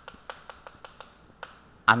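Chalk tapping on a chalkboard while writing, a quick irregular series of light clicks, then a sharper click near the end.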